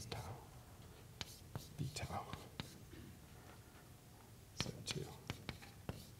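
Chalk tapping and scratching on a blackboard as an equation is written: a run of irregular short clicks and strokes, with a faint mutter of voice partway through.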